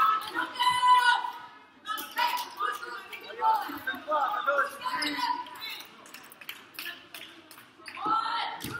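A basketball bouncing on a hardwood gym floor, with voices of players and spectators calling out around it.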